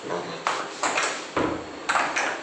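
Four short, sharp knocks, each with a brief ring, about half a second apart.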